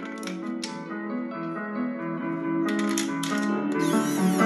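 Background music over a cordless driver spinning in the main bearing girdle bolts on an aluminium engine block, with a couple of sharp clicks early on and a fast run of clicking about three seconds in.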